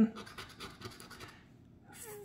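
A plastic coin-shaped scratcher rubbing the coating off a scratch-off lottery ticket in short, faint, irregular scratching strokes that die down about a second and a half in.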